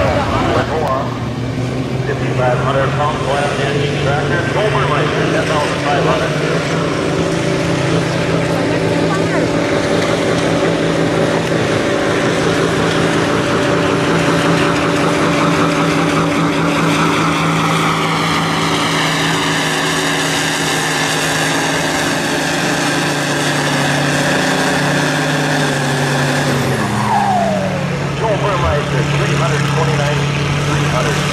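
Farmall M tractor's four-cylinder engine running steadily under load as it pulls the weight sled. Near the end the engine note drops and settles at a lower, steady speed.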